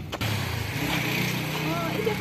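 A motor vehicle's engine running at a steady low pitch nearby.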